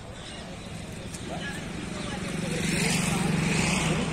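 A motor vehicle's engine drawing near, growing steadily louder over the last two seconds.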